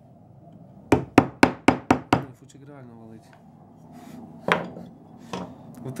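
A carving chisel tapped into linden wood in a quick run of six sharp taps, about four a second, then one more single knock later on.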